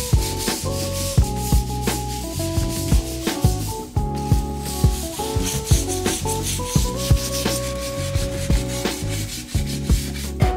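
240-grit sandpaper rubbing by hand over a dried first coat of microcement, in repeated back-and-forth strokes. This knocks down the rough orange-peel texture so the second coat won't chip. Background music plays under it.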